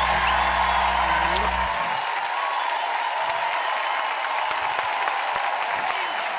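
Studio audience applauding steadily, with the band's final low held note stopping about two seconds in.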